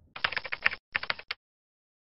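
Keyboard typing sound effect: a fast run of key clicks lasting about a second, with a brief break partway through, then it stops.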